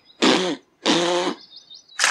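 A man's voice giving two short jeering cries, each about half a second long, the first falling in pitch at its end.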